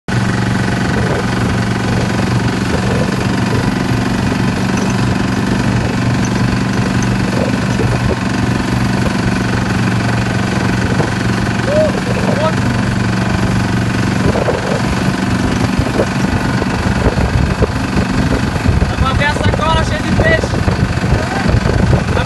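Fishing boat's engine running with a steady low hum, which thins out about two-thirds of the way in. Voices come in near the end.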